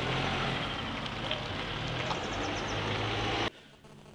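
Steady outdoor background noise: a low, engine-like rumble under a broad hiss. It cuts off abruptly about three and a half seconds in, leaving a much quieter room tone.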